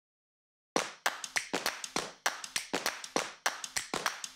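Rhythmic hand claps, about three or four a second in a syncopated pattern, starting after a brief silence: the clapping intro of a music track.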